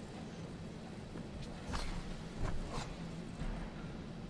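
Karate kata techniques: four sharp cracks of a karate gi snapping and bare feet striking the tatami, bunched between about one and a half and three seconds in, over a steady low arena hum.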